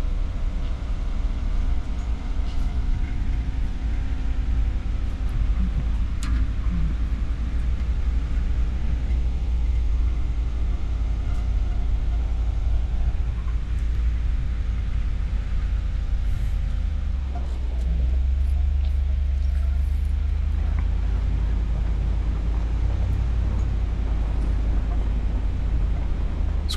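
Ram 2500 Power Wagon driving along a dirt forest track, heard from inside the cab: a steady low rumble of engine, drivetrain and tyres, with a few brief clicks and scrapes.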